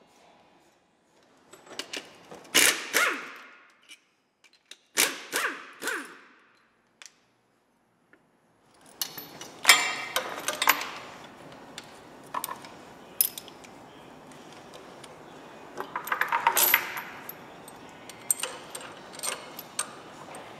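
Steel chain and hand tools clinking and jangling against metal, in several separate bursts of sharp metallic clicks, with a dense rattle of chain links late on.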